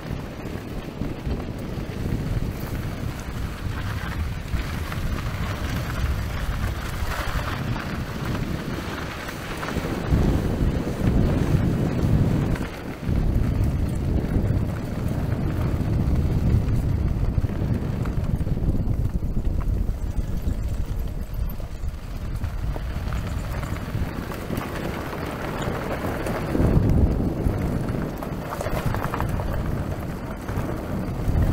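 Fat tyres of an electric recumbent trike rolling over a gravel and dirt trail at about 17 to 20 km/h, with wind buffeting the microphone. The noise gets louder about ten seconds in, dips briefly soon after, and then carries on.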